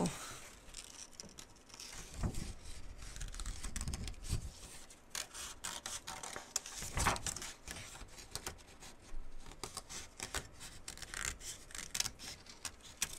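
Small craft scissors snipping through printer paper in short, irregular cuts around a printed flower, with the paper sheet rustling and a few soft bumps as it is handled.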